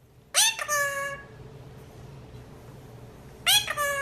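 Indian ringneck parakeet calling in two short groups of high, whining, gliding calls, the first about a second in and the second near the end.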